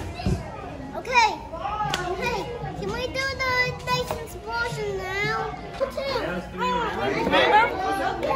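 Young children's voices chattering and calling out, several at once, high-pitched and rising and falling, in a large room.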